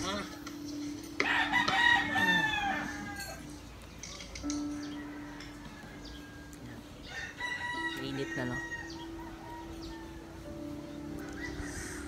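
A rooster crowing: one loud crow about a second in, then a second, fainter crow around seven seconds in.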